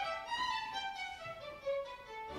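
Orchestral violins playing a quick melodic passage with no singing.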